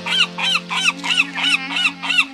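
A rapid, even run of honking bird-like calls, about four or five a second, each rising and then falling in pitch, over sustained harmonium notes. It is a staged bird effect for birds circling overhead in the story.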